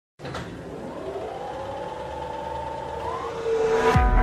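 Intro of an electronic song: a synth sweep rising slowly in pitch and swelling in level, ending in a deep downward boom just before the full track comes in.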